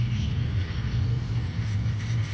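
Car engine and tyre noise heard from inside the cabin while driving, a steady low drone.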